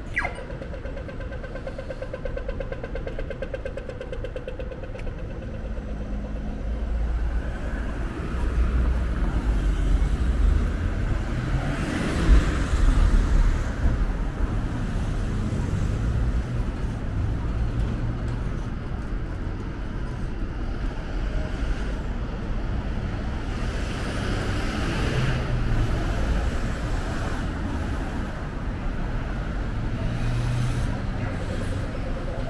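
Australian pedestrian crossing signal sounding its falling electronic zap for the walk phase, then rapid ticking for several seconds. Behind it, city traffic runs throughout, with vehicles passing loudest about twelve seconds in.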